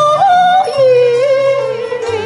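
Cantonese opera singing: a woman's voice holds long, wavering notes over the band's accompaniment, stepping down to a lower held note just under a second in.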